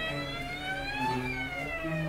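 Violin and cello duet: a high bowed note glides slowly upward for about a second, then slides back down, over held low cello notes.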